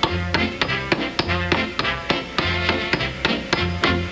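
Hammer blows driving nails into a wooden board in rhythm, several strikes a second, over a band playing a tune with a steady bass line.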